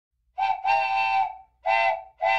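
A whistle sound effect blowing a two-note chord in blasts: a short toot, then a longer one, then another short toot near the end.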